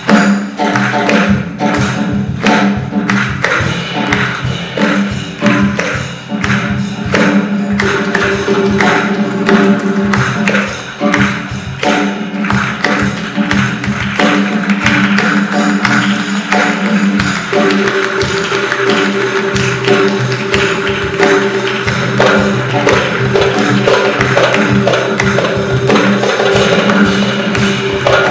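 Live ensemble music: a darbuka played in fast, dense strokes over long held cello notes.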